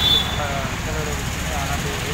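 A man speaking over steady road-traffic rumble, with a thin high steady tone in the first moment.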